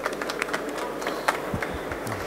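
Sparse applause from a small audience: a few hands clapping, irregular and light, over the steady hum of a busy exhibition hall.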